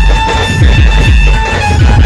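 Loud music played through a dhumal's truck-mounted speaker stacks, with deep bass hits about three times a second, each sliding down in pitch.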